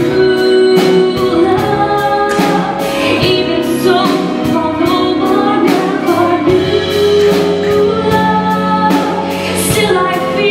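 A female soloist singing amplified through a microphone over musical accompaniment with a steady beat.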